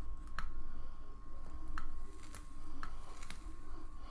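Small handling noises: a few scattered light clicks and taps as a plastic e-liquid squeeze bottle is worked against a rebuildable atomizer's deck and cotton.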